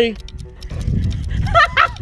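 Loose plastic Lego bricks clicking and clattering under stockinged feet as someone steps slowly through them, with a brief high voice cry near the end.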